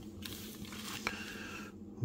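Faint handling noise of small electronic components and a plastic bag being sorted by hand, with a couple of light clicks.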